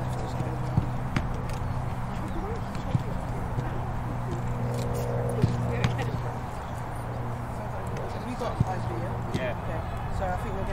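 Outdoor ambience of indistinct, distant voices over a steady low hum, with scattered sharp thuds now and then.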